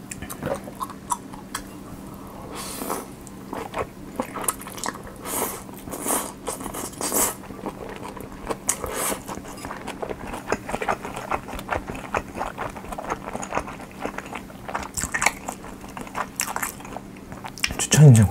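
A person slurping and chewing Nongshim cold ramen noodles close to the microphone: several wet slurps, the loudest in the first half, and many small mouth clicks and smacks throughout. A faint steady hum runs underneath.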